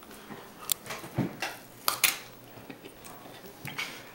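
Sharp clicks and crinkles from a stiff playing card being bent and handled: a handful in the first two seconds, fainter ones after.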